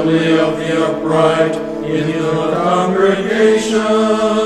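Congregational singing of a chanted psalm, led by a cantor, over sustained organ chords.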